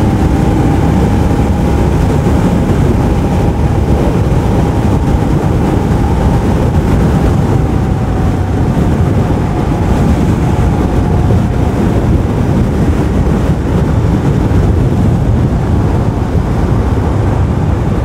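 Royal Enfield Scram 411's single-cylinder engine running steadily at highway cruising speed, heard under heavy wind rush on the microphone.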